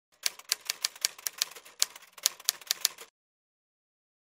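Typewriter sound effect: a run of sharp key clacks, about four a second with a brief pause midway, stopping after about three seconds.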